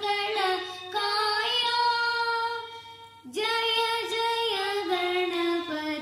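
A boy singing a devotional song with a small electronic toy keyboard. He holds a long note that fades out, breaks off briefly about three seconds in, then sings on.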